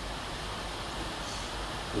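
Steady background hiss with a low hum underneath: room tone and recording noise, with no distinct event.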